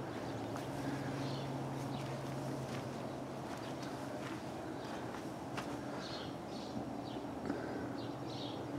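Faint footsteps on dirt over a steady low hum, with scattered light clicks and a few faint high chirps in the second half.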